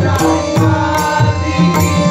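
Marathi abhang bhajan played live: a man singing over sustained harmonium tones, with pakhawaj drum strokes keeping the rhythm.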